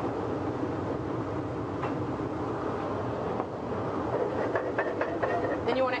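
Sauce liquid of white wine, fish stock and cream simmering in aluminium sauté pans on a stove: a steady, dense bubbling.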